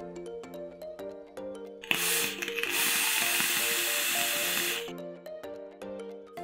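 A steady hiss lasting about three seconds, beginning with a click about two seconds in: air drawn through a Hellvape Hellbeast 24 mm rebuildable dripping atomizer while its 0.075-ohm coils fire. Background music plays throughout.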